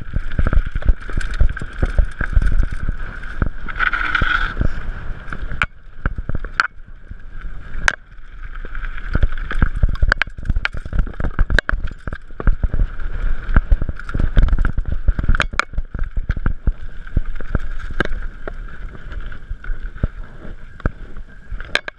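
Mountain bike rattling and clattering down a rocky trail, with dense knocks over loose stone and a low rumble underneath. A steady high-pitched tone runs throughout and swells briefly about four seconds in.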